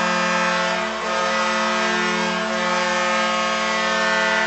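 Arena goal horn sounding one long, steady, low blast, signalling a home-team goal in ice hockey.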